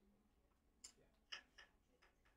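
Near silence: classroom room tone with three faint, short clicks near the middle.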